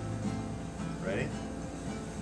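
Quiet pause in acoustic guitar playing: a low note rings faintly and dies away in the first second.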